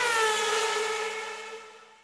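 Intro sound effect over the title card: a whistle-like pitched tone with a hiss. It is loudest at the start, dips slightly in pitch, then fades away toward the end.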